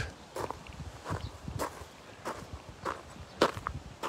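Footsteps on sandy ground at a walking pace, a step roughly every half-second or so.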